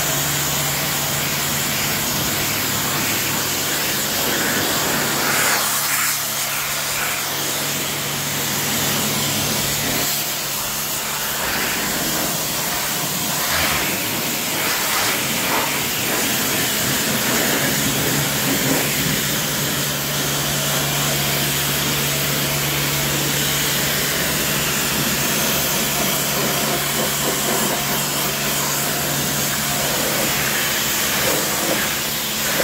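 Self-service car wash pressure washer rinsing a car with plain water: the high-pressure jet hisses steadily as it strikes the body panels, with a steady low hum underneath.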